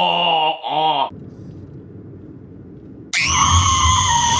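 A small child's high-pitched scream, starting about three seconds in, rising briefly and then held for about a second and a half before cutting off abruptly. Before it, a voice with a wavering pitch runs for about a second, then a quieter lull.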